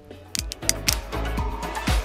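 Background pop music with a steady beat, cutting in just after a brief gap at the start.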